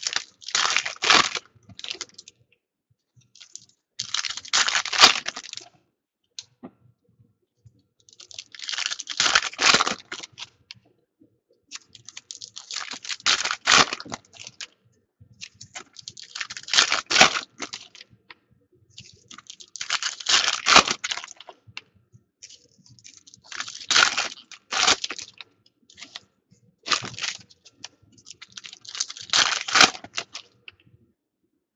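Foil trading-card pack wrappers being torn open and crinkled, one pack after another: about eight separate bursts of crinkling and tearing, every three to four seconds, with quiet gaps between.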